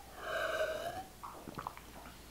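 A man drinking juice from a glass bottle: one short airy gulp with a hollow bottle gurgle that bends slightly upward at its end, followed by a few small faint clicks of swallowing.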